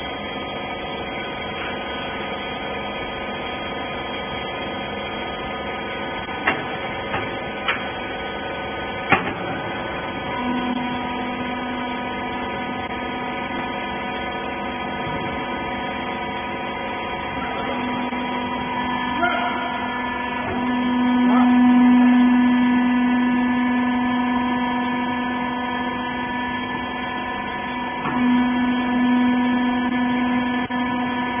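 Electric hydraulic power unit of a small rag-baling press running with a steady hum, with a few sharp knocks about six to nine seconds in. From about ten seconds a louder steady drone joins and swells in the middle: the hydraulic pump taking load as the ram compresses the rags into a bale.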